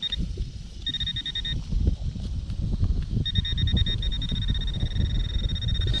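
A handheld metal-detector pinpointer beeping in rapid, high-pitched pulses as it is probed in a dug hole, signalling metal in the soil. It gives a short burst at the start, another about a second in, then beeps without a break from about three seconds in. Rustling and scraping from the hand and dirt runs underneath.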